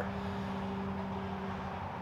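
Room tone: a steady low hum with two unchanging tones over a faint, even hiss.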